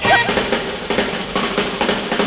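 Mid-1950s rock 'n' roll record playing from a 78 rpm shellac disc: an instrumental break in which a drum kit, snare hits to the fore, leads, with horn lines fading beneath.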